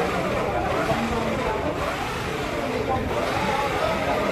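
Men's voices talking casually, over a steady low rumble.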